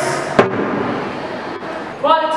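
A single sharp knock or thud about half a second in, followed by a fading reverberant hiss.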